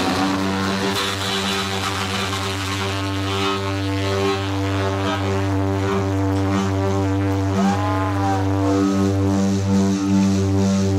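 Live rock band holding a steady, droning chord on amplified electric bass and guitar, with a few wavering, bending guitar notes about three-quarters of the way in.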